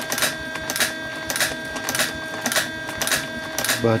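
Turn counter of a 3D-printed coil winder clicking once per turn as the bobbin spins, a click about every half second, over a faint steady hum from the winder's drive.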